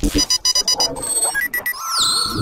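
Synthesized sci-fi scanner sound effects: a rapid run of electronic bleeps, then three short beeps in a row near the end, with a steady tone and falling swoops starting just before the end.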